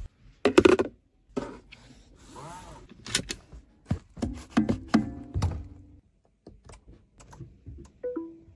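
A string of sharp clicks and thunks from the car's interior controls being worked, with brief tonal sounds around the middle.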